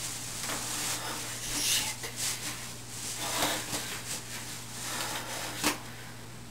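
Clothing rustling and body movement as a person stands up and pulls up a pair of boxer shorts, with a sharp knock near the end, over a steady low hum.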